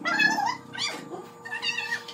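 A domestic cat meowing several times in a row.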